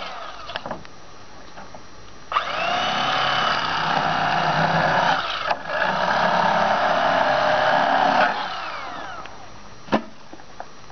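Electric fillet knife cutting a catfish fillet: its motor winds down at the start, switches on again about two seconds in with a rising whine to a steady buzz, drops out for a moment midway, then switches off near the end and winds down.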